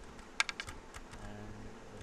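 Computer keyboard keys clicking as code is typed: a quick run of about five keystrokes about half a second in, then a few lighter, scattered ones.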